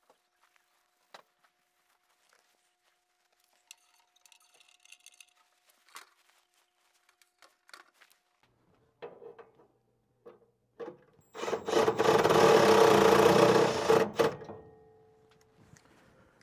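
Cordless drill/driver run for about three seconds near the end, after a short blip of the trigger, driving in the screw that holds the just-cleaned furnace flame sensor. Before it, faint clicks and a brief scratchy rubbing.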